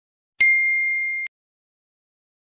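A single high, bell-like ding sound effect starting about half a second in. It rings steadily for just under a second, then cuts off abruptly.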